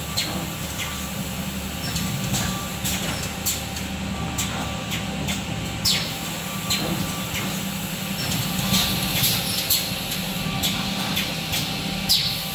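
Automatic edge banding machine with its return conveyor running: a steady motor hum, broken by frequent sharp clicks and clacks at irregular intervals, more of them near the end.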